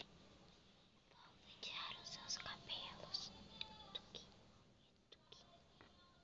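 Soft close-up whispering, mostly from about one and a half to three and a half seconds in, followed by a few faint clicks.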